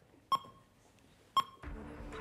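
Game countdown timer beeping once a second: two short, sharp electronic beeps about a second apart. A low steady sound comes in near the end.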